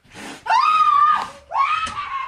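A person screaming: two long, high-pitched shrieks, the second starting about a second and a half in.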